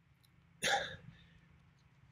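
One short, sharp breathy sound from a man's mouth and throat, beginning a little over half a second in and lasting under half a second.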